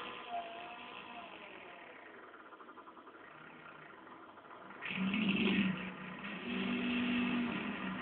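Electric guitar played through effects pedals, making odd noise effects: a note fades out with a wavering, gliding pitch, then after a quieter stretch a buzzing sustained tone starts about five seconds in and runs on.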